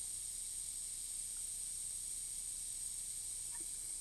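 A steady, even hiss with a faint high whine, unchanging throughout.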